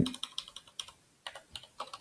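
Computer keyboard keys being pressed in a quick, irregular run of a dozen or so short clicks, with a brief pause about a second in.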